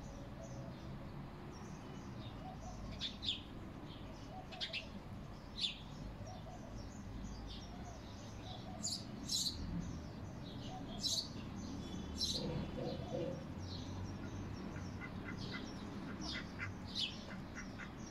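Birds chirping outdoors: brief high-pitched chirps come singly and in short runs, more often in the second half, over a steady low background hum, with a few soft lower calls around the middle.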